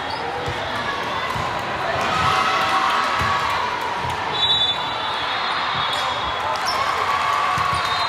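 Volleyballs thudding and bouncing on a hardwood gym floor at irregular moments, over a constant murmur of spectators' chatter in a large, echoing sports hall.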